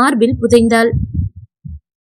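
A woman reading aloud in Tamil for about the first second, then a few brief low sounds and a pause.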